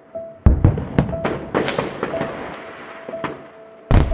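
Fireworks going off: a deep boom about half a second in, then a string of sharp bangs and crackling. Background music plays underneath.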